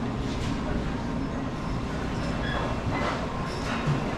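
Busy food court room ambience: a steady low rumble with background chatter and a few light clinks, most of them about three seconds in and near the end.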